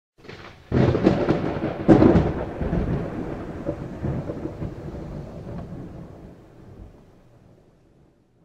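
Thunder, likely a sound effect: a sudden crack about a second in, a second loud clap about two seconds in, then a long rumble that slowly fades away.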